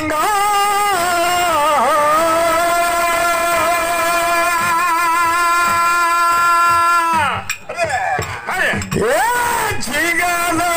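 A man's voice singing a dollina pada, a Kannada folk song, into a microphone: one long note held steady for several seconds, then sweeping down and up in glides near the end before settling on a held note again.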